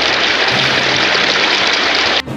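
Water spraying in a steady hiss from a toy fire truck's water cannon.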